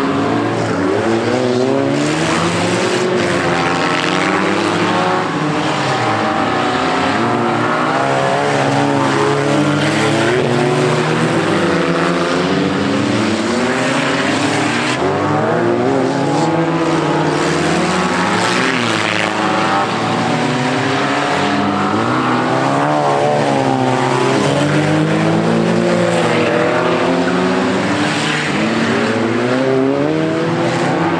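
Several race car engines running together, revving up and easing off in overlapping rises and falls of pitch as the cars accelerate and slow through the course.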